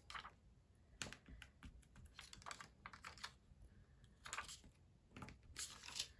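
Faint, irregular light clicks and taps: small epoxy dots being picked off their clear plastic backing sheet with fingernails and pressed onto a paper card.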